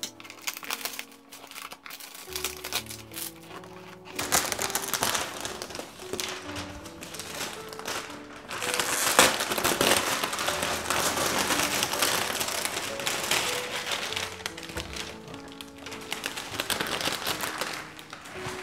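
Background music, with the crinkling and rustling of plastic wrap being pulled off a cardboard packaging box over it. The crinkling comes in about four seconds in and is loudest around the middle.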